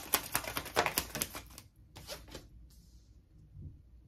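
A tarot deck shuffled by hand: a rapid run of card clicks for about the first second and a half, a few more a little later, then it stops.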